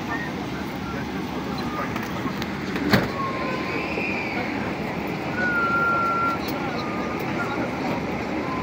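Airliner cabin noise: a steady low rush with passenger chatter, and one sharp knock about three seconds in.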